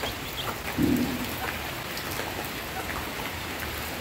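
Steady rain falling, an even hiss throughout, with one short low sound about a second in.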